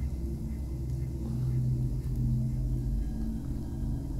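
A small plastic smoothie bottle being shaken, heard faintly over a steady low hum with a rumble.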